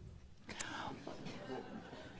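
Faint whispered voice sounds in a quiet pause between spoken lines, with a soft click about half a second in.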